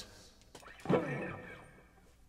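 A man's short vocal sound about a second in, sliding down in pitch and fading.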